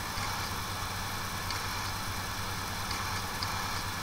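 Room tone: a steady low hum under a faint, even hiss.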